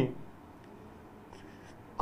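Faint rustling of paper sheets being handled at a desk during a quiet pause, a few soft scuffs about a second in.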